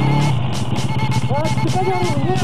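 Background music: a song with a singing voice over a quick, steady beat.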